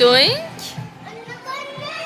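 A young child's high-pitched wordless vocal cry, loudest just at the start, its pitch dipping and then rising, followed by a softer call about a second in, over background music.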